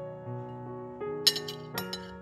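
A metal fork clinking against a ceramic plate, about three sharp clinks in the second half, the first the loudest, over gentle piano music.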